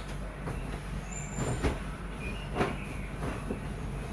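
A bedsheet being unfolded and shaken out, the cloth rustling and giving a few short whooshing flaps, the loudest about one and a half and two and a half seconds in. A steady low hum runs underneath.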